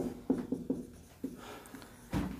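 Marker pen writing on a whiteboard: a quick run of short strokes in the first second, then one more a little later, as a sum is written out.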